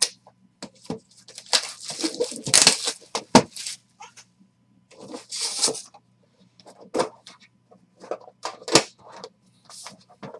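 Hands handling and opening a trading-card hobby box: cardboard and plastic packaging rustling and sliding in irregular bursts, with several sharp knocks as the box and its tin are set down and handled.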